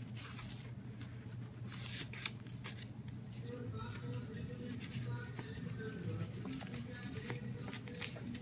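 Sheet of construction paper being flexed and handled, with scattered rustles and crackles as yarn is threaded through a punched hole, over a low steady hum.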